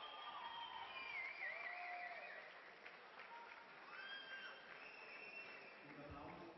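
Faint crowd noise in a boxing hall: a low murmur with scattered calls from the audience, some of them high, sliding pitches.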